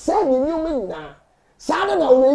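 A man's voice preaching in loud, drawn-out, exclaimed phrases. One long phrase rises and falls and ends about a second in, and after a short pause another begins near the end.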